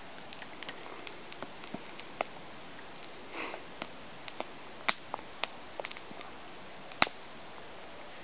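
Small wood campfire crackling: scattered sharp pops at irregular intervals, the loudest about seven seconds in. A soft breathy hiss comes around three and a half seconds in.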